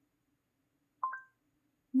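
A short two-note electronic chime, lower note then higher, about a second in: the car infotainment's Google voice assistant acknowledging a spoken navigation command.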